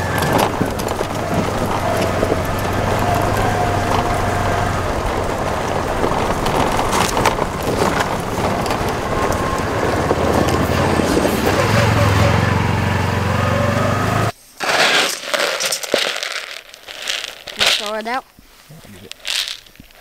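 Side-by-side UTV driving along a rocky dirt trail: a steady low engine drone with tyres crackling over gravel. It cuts off abruptly about fourteen seconds in, leaving much quieter outdoor sounds.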